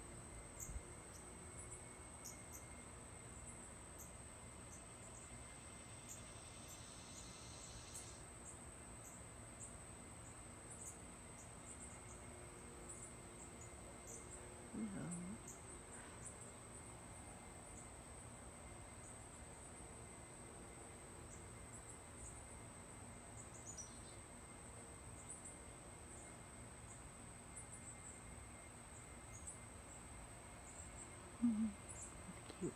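Quiet outdoor ambience: a faint steady high-pitched tone over a low hiss, with a brief low sliding sound about halfway through.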